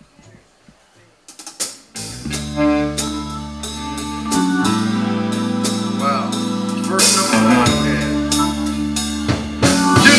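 A live country band kicks off a song: after a few sharp drum hits, the full band comes in about two seconds in, with electric guitar, bass and drum kit playing the intro as held chords over a steady beat.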